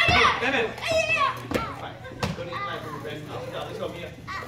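Two sharp smacks about 0.7 s apart, a bit over a second and a half in, as a child's karate strikes land on a hand-held kick pad, amid excited voices.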